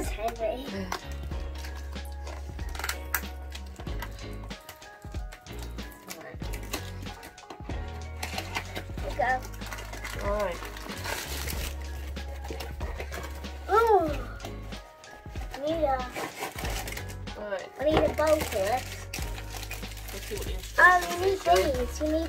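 Upbeat electronic background music with a steady bass line, with a child's voice breaking in several times in the second half.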